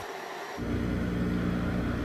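A steady low hum of an idling engine begins about half a second in and holds level.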